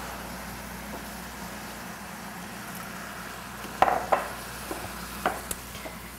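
Stock sizzling steadily in hot pans on a gas range just after being poured in, with a few short scrapes and taps of wooden spoons stirring against the pans, about four seconds in and again near the end.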